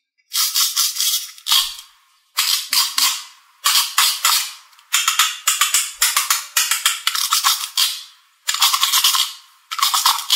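Crackly plastic rattling and clicking in repeated bursts as the two halves of a plastic pineapple toy are pulled apart and handled. Each burst is a dense run of fine clicks that fades, with a longer stretch in the middle.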